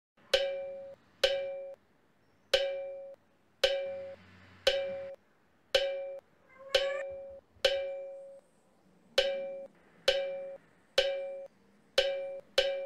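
A single short struck percussion note, the same pitch each time, repeated about eleven times at roughly one-second intervals, each ringing briefly and dying away. A faint short rising squeak comes about seven seconds in.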